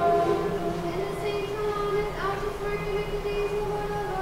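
Orthodox liturgical chant sung on a steady reciting tone. The words move over one held pitch, with a lower note held beneath it.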